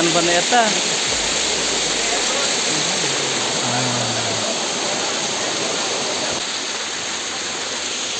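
Steady rush of a small waterfall spilling over rocks into a mountain stream, with a brief voice near the start.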